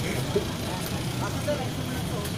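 Steady low rumble of city street traffic, with faint snatches of crowd voices.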